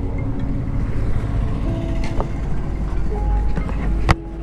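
A BMW sport motorcycle's engine idling with a steady low rumble as the bike stands at the roadside. A few short steady tones sound over it, about halfway through and again near the end.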